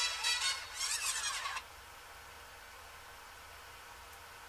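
A pop song with a sung vocal line plays and ends about a second and a half in. After that there is only a faint, steady room hiss.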